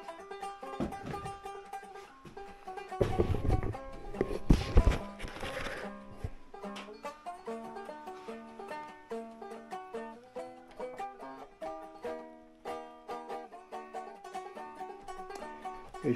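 Plucked banjo music playing steadily as a background track. Between about three and six seconds in, a few loud knocks and handling rattles break in as a brass geared tuning peg is tried in a wooden banjo headstock.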